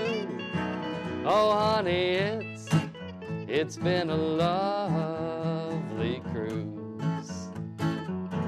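Acoustic guitars playing a slow blues song: a steady low accompaniment under a melody line that bends in pitch.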